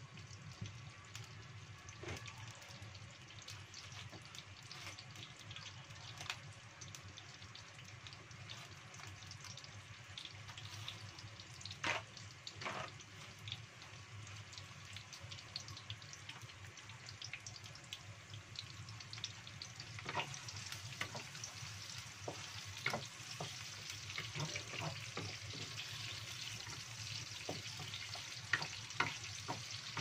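Cut shallots sizzling in hot cooking oil in a non-stick wok, with scattered sharp pops of spitting oil. The sizzle grows louder and denser over the last third.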